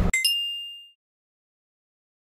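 A quick two-note chime sound effect, bright and bell-like, with the second note higher and ringing out for about half a second before fading.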